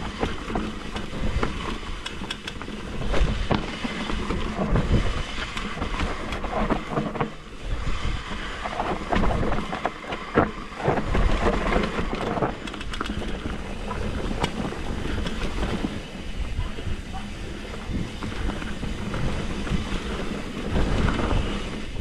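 Mountain bike rolling fast down a rocky dirt singletrack: tyres on dirt and stones, with the bike knocking and rattling over bumps throughout. Wind buffets the microphone.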